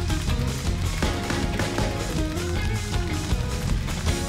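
Live church band playing, with a prominent electric bass line under a steady beat.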